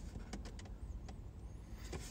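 Quiet inside a parked car: a low, steady hum with a few faint, short clicks.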